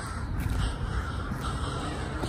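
A bird calling over steady outdoor background noise.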